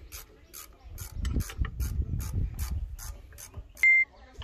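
Ratchet wrench clicking, about four clicks a second, as a bolt is turned on an excavator engine, with a brief high squeak near the end.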